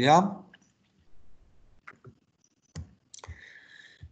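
A computer mouse clicking a few times at irregular intervals.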